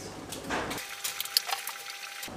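Light clicks and knocks of hard objects being handled and shifted, with a short rustle about half a second in and a sharper click near the middle.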